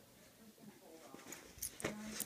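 A Shih Tzu scuffling with a plush toy on a cushion: soft rustling, then a quick cluster of sharp thumps and clicks near the end.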